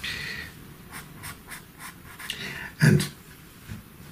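Pastel pencil scratching in short strokes on textured pastel paper as a light colour is worked into a drawn cat ear. A brief louder sound comes about three seconds in.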